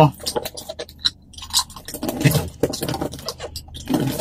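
Scattered taps, scrapes and crinkles of hands handling a taped cardboard box, with a blade starting to cut into the packing tape near the end.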